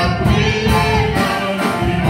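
Live gospel worship singing led by a woman's voice through a microphone, with Roland electronic keyboard accompaniment and a pulsing bass line.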